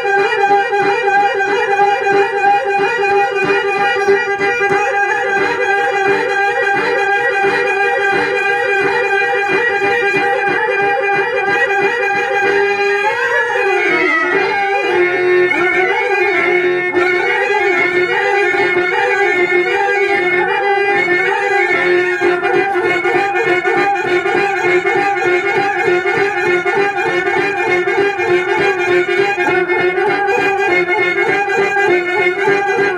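Reed-instrument accompaniment music, most like a harmonium: sustained notes over a steady drone. A little before halfway a pitch slides down, then the held notes carry on.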